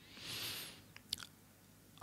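A person's soft breath into a close microphone lasting about half a second, followed about a second in by a couple of faint short clicks.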